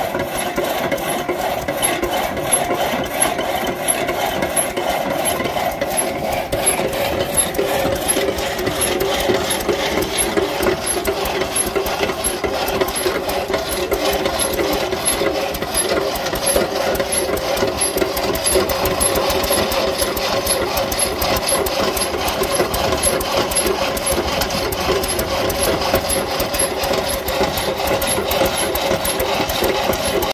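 New Record dragsaw running: its stationary engine chugging steadily with a fast, even beat while the crank drives the long crosscut blade back and forth, rasping through the log. A higher hiss joins in about halfway through.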